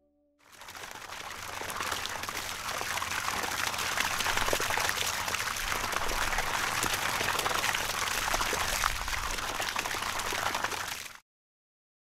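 Water pouring and splashing steadily from the outlet of an RPS 400 solar well pump. It fades in over the first second or two and cuts off abruptly near the end.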